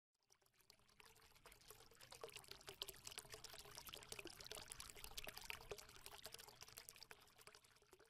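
Faint sound effect for a channel logo animation: a dense run of tiny clicks and crackles that swells over the first few seconds and fades out near the end.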